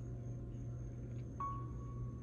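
A quiet, steady low hum with a faint high tone; a soft sustained tone joins about one and a half seconds in.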